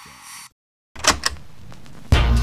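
Cassette player's play key pressed: a few sharp mechanical clicks about a second in, after a moment of dead silence, then the tape mechanism running just before music starts.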